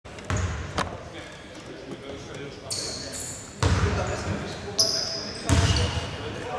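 Basketball bouncing on a hardwood court in a large, echoing arena, a few separate thumps, with high shoe squeaks and players' voices around it.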